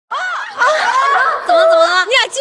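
High-pitched vocal exclamations of surprise, gliding up and down, ending in one drawn-out held cry from about one and a half seconds in.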